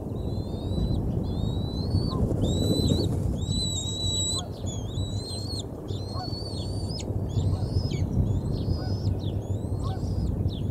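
Bald eagle nestling squeeing: a string of about a dozen high, drawn-out squeals, roughly one a second, over a low steady rumble. The adult female lands beside it with prey partway through the calling.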